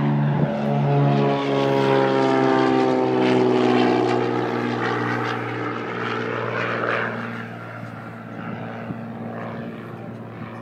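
Another propeller-driven light airplane's engine running close by, its pitch sliding steadily downward as it goes past, then fading about three quarters of the way through.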